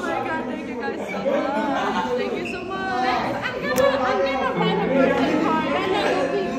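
Excited chatter of several voices talking over one another.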